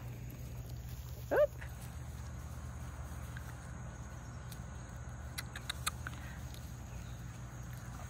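A dog gives one short, high whine that falls in pitch, about a second in, over a steady low background hum. A few faint ticks follow midway.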